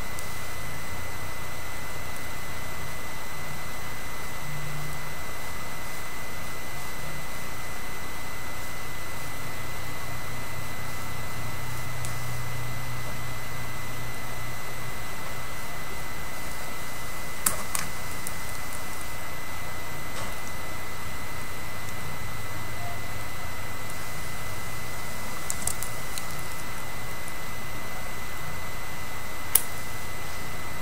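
Steady hiss with a constant thin high whine, the self-noise of a low-quality recording setup, with a few light clicks about halfway through and again near the end.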